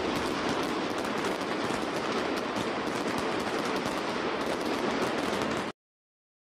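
Applause: dense, steady clapping after the song has ended, cut off abruptly near the end.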